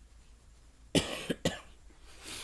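A man coughing: two or three short coughs in quick succession about a second in.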